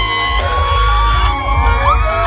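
Loud amplified live music with heavy bass, and a singer on a microphone holding long notes that glide in pitch.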